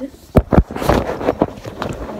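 Two sharp thumps followed by rustling and a few lighter knocks: bedding and clothing brushing against and bumping the phone's microphone as it is jostled on the bed. She puts this 'weird stuff' down to her feet on the bed.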